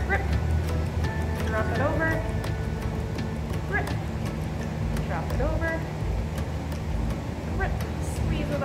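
Background music: sustained low notes under a wavering melody line.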